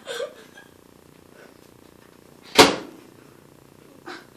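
A single sharp knock, a hard object striking something, about two and a half seconds in, with a short ringing tail.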